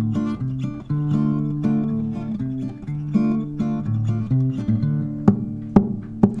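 Acoustic guitar playing a short instrumental break in a folk song: a steady run of plucked notes over a moving bass line, with two sharper strokes near the end.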